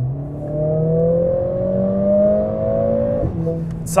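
Mercedes-AMG CLA45 S's turbocharged four-cylinder engine, heard inside the cabin, revving up under full acceleration for an overtake. Its pitch climbs for about three seconds, then drops suddenly at an upshift and holds lower.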